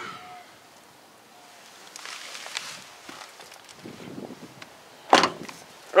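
Quiet outdoor background with faint scuffing of footsteps on gravel, and one short sharp noise about five seconds in.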